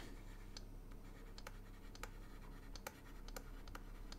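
Faint scratching and light tapping of a stylus writing by hand on a drawing tablet, with about ten small clicks at irregular spacing.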